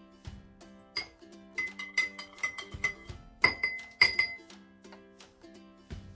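Drinking glasses clinking: a run of sharp, ringing taps from about a second in to just past four seconds, the loudest two near the middle. Background acoustic guitar music plays throughout.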